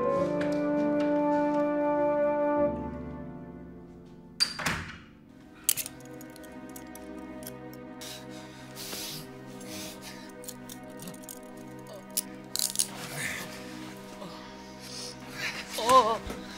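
Dramatic score with brass chords held and then fading out about three seconds in, followed by a sharp sound-effect hit around four and a half seconds in. A soft music bed then runs under scattered thuds and knocks as a man is wrestled onto a wooden floor.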